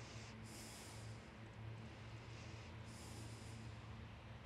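Two soft breaths close to the microphone, one near the start and one about three seconds in, over a faint steady low hum.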